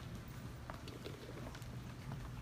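A few faint, scattered footsteps on a stage floor over a steady low hum.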